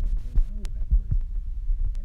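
A low, uneven rumble with soft thumps, two short low vocal murmurs, and a few sharp clicks.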